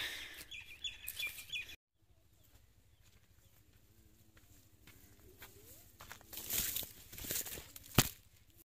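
A bird calls in short, repeated high notes for the first second or two. After a cut there is faint outdoor quiet, and near the end a louder dry rustle with light crackles, like wheat stalks brushed by someone walking through a field.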